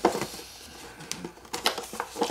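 A cardboard retail box with a plastic window being handled and turned over: a sharp click at the start and a soft rustle, then several short scattered taps and clicks of the cardboard and plastic near the end.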